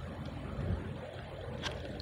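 Water that has just been poured into a hot wok of sautéed vegetables and egg, heating with a soft, steady sound, and a light click near the end.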